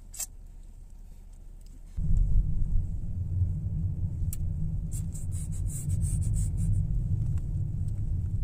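Low rumble inside a car's cabin that comes in suddenly about two seconds in and stays loud and uneven, over a quieter low hum; a single click near the start.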